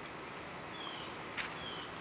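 Quiet outdoor background with two faint, short falling chirps from a bird, and one brief soft hiss about one and a half seconds in.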